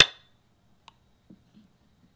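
A Go program's stone-placement sound effect: one sharp click that rings briefly as a stone lands on the board. A much fainter click follows just under a second later.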